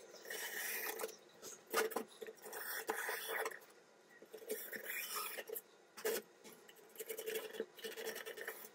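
Scissors trimming excess monofilament polyester screen mesh from a wooden frame: irregular runs of snipping and scraping, with short gaps between cuts.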